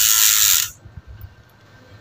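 Bicycle rear freehub buzzing as the rear wheel coasts, its pawls clicking too fast to count, cutting off suddenly under a second in.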